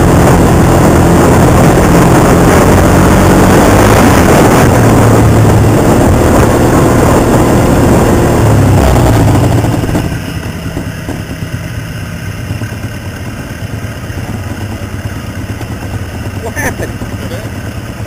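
Off-road vehicle engine running hard with heavy rushing noise on the vehicle-mounted microphone. About ten seconds in the sound drops sharply to a quieter, steady engine idle.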